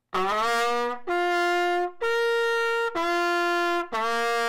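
Trumpet played with the valves left up, the lips alone moving it between notes of the same fingering: low, middle, high, middle, then low again. Each note is held about a second, and the first one scoops up into pitch.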